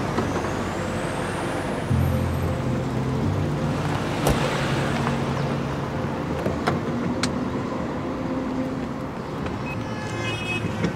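Town street traffic: cars running and passing in a steady wash of road noise, with a low engine-like hum through the middle and a few sharp clicks.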